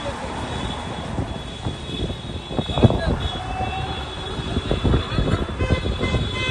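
Street traffic noise from a slow-moving line of cars, with engines, road noise and indistinct voices, and one sharp knock a little before three seconds in.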